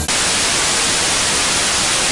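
Television static: a steady hiss of white noise that cuts in abruptly just after the music stops.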